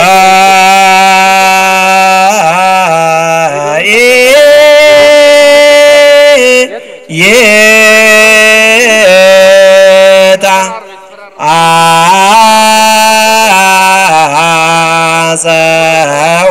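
A single voice chanting a slow religious hymn in long held notes with ornamented turns of pitch, breaking off briefly twice, about seven and eleven seconds in.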